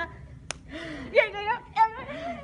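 Two girls laughing: short breathy bursts and pitched squeals of laughter, after a single sharp click about half a second in.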